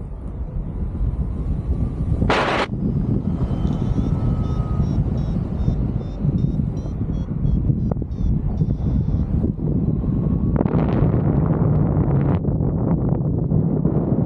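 Wind buffeting the microphone of a harness-mounted camera during paraglider flight: a steady low rumble, with a short hiss about two and a half seconds in and a stronger, brighter rush of wind from about ten to twelve seconds.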